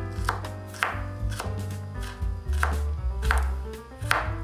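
Chef's knife chopping garlic on a wooden cutting board, a series of sharp blade strikes roughly two a second, over background music.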